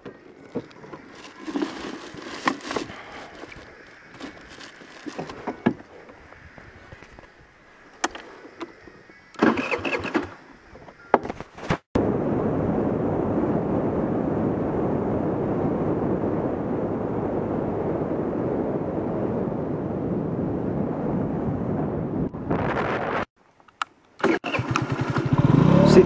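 A moped on the move gives a steady, even rush of engine and road noise for about eleven seconds, starting after a cut about halfway through. Before that come quieter, broken sounds from the parked moped, with a few short louder bursts.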